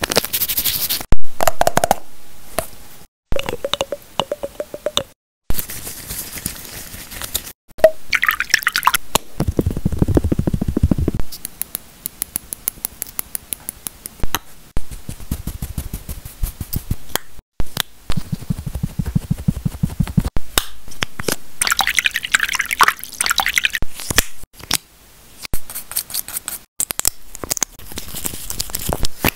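Close-miked handling sounds of cosmetics being worked onto a paper face drawing, in a string of short cuts: wet squishing and dabbing of face cream with fingertips, a pencil scratching on the paper, and a lip gloss wand clicking and smearing. Many small taps and clicks run through it.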